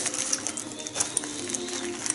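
Small metal rings and clasps of fluff-ball keychain charms clicking and jingling lightly as they are handled, a scatter of quick ticks over faint steady tones.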